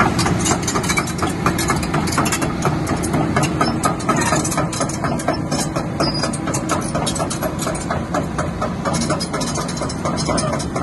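Crawler excavator's diesel engine running as its steel tracks clank in a quick, even series, several clanks a second, while the machine travels over gravel.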